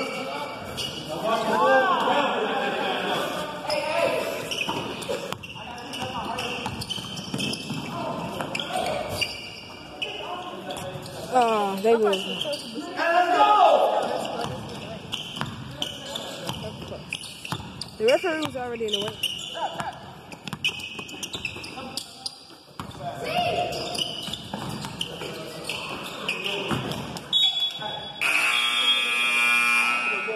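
A basketball being dribbled and bouncing on a hardwood gym floor, with players and spectators shouting. Near the end a scoreboard buzzer sounds for about two seconds.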